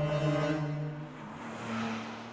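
Sustained background music chords fading out, overlapped by a whoosh sound effect that swells and rises in pitch over the last second and a half as a transition between scenes.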